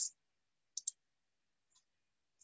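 Computer mouse double-click, two quick sharp clicks close together, followed about a second later by one faint click.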